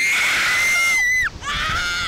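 Two girls screaming as a slingshot ride launches them into the air: one long, high held scream that breaks off just over a second in, then a second scream starting right after.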